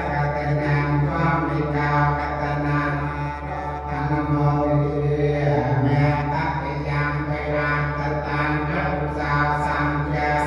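Cambodian Buddhist monks chanting into microphones, one continuous recitation held on a steady low pitch.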